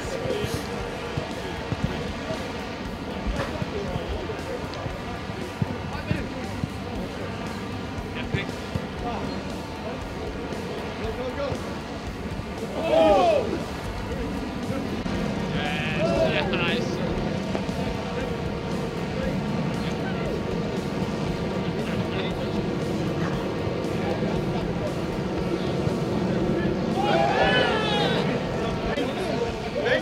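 Footballers' shouts and calls during a training passing drill, the loudest about halfway through, with a few ball strikes, over a steady background hum.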